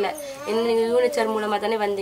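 Only speech: a woman talking, with a long drawn-out vowel about half a second in.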